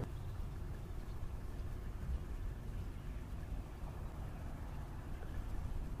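A steady, faint low rumble of outdoor background noise, with no distinct events standing out.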